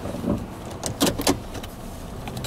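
Low steady rumble heard from inside a stopped car, with a few short clicks and knocks about a second in.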